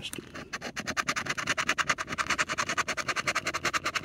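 A coin scratching the latex coating off a scratch-off lottery ticket in quick back-and-forth strokes, about eight to ten a second. The scratching starts about half a second in.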